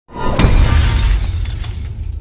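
Glass-shattering sound effect: a sudden crash with sharp cracks about half a second in, over a deep low rumble that slowly fades.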